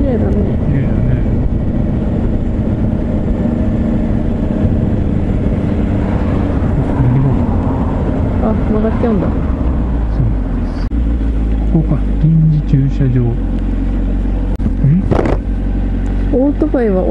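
Suzuki GSR400 inline-four motorcycle engine running while riding, with road and wind noise, dropping to a low steady idle about ten seconds in. Voices talk over it in the second half.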